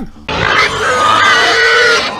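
A person's drawn-out wordless vocal sound, one long held noise starting a moment in and shifting in pitch about a second in.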